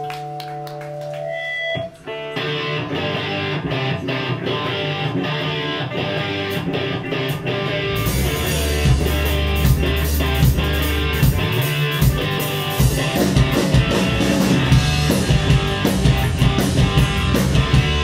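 Live rock band playing electric guitars and drum kit: held guitar chords ring out, then the full band launches into the song about two seconds in, with heavier bass and kick drum joining about eight seconds in.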